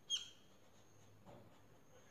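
Felt-tip marker squeaking briefly on paper as a line of a structure is drawn, a short high squeak just after the start, then a faint scrape of the tip about a second later.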